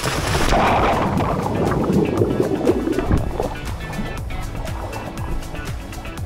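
A person jumping into a swimming pool: a sudden splash at the start, then water churning and sloshing around him. Background music with a steady beat plays throughout.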